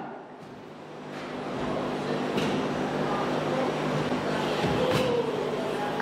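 Radio-controlled race cars running on an indoor carpet track: a steady rushing motor-and-tyre noise that builds over the first two seconds and then holds, with a sharp tick about five seconds in.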